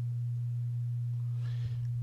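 A steady low-pitched hum, one unchanging tone, with a faint soft hiss like a breath near the end.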